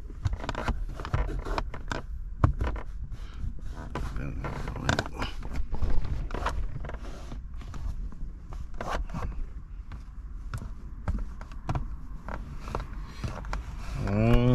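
Microfiber towel rubbing and wiping over a car's plastic centre console and gear-shifter trim, with scattered small clicks and taps against the plastic.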